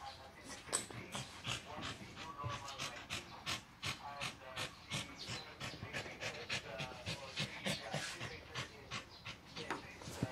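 A small dog panting in quick, even breaths, about three a second, as it wrestles and plays.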